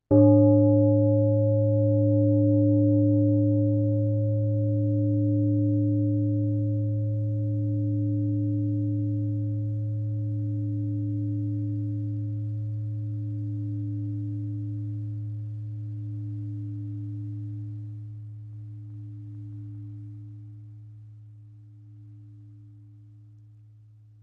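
A deep meditation bell struck once, its low hum and several higher ringing tones wavering slowly and fading away over about twenty seconds; it is still faintly ringing at the end.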